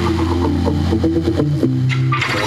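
Pop music from an FM radio station playing through a vehicle's stereo speaker, with a strong bass line.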